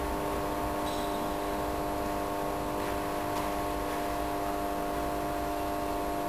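A steady hum of several held tones over faint room hiss, with a few faint ticks.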